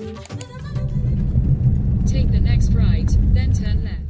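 Intro music ends about half a second in, giving way to the loud, steady low rumble of a Toyota Hilux camper on the move, heard from inside the cab.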